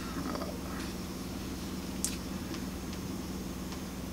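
Steady low room hum with faint rustles and a small sharp click about two seconds in, from a plastic lure package being handled.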